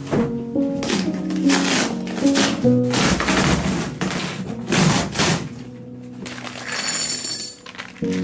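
Background music, over which cardboard packaging is ripped and torn off a large flat-pack box in several loud tearing strokes, about a second and a half apart.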